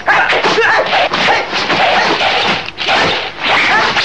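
Loud, rough shouting and yelling of men fighting, a dense rush of cries with brief breaks.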